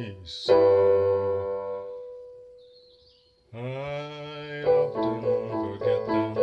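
Piano music: repeated chords, then a chord held and fading away over about three seconds, then a new chord about three and a half seconds in and the repeated chords coming back.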